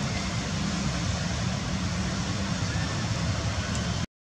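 Steady low rumbling noise with a fainter hiss above it, unchanging throughout; no distinct calls or events.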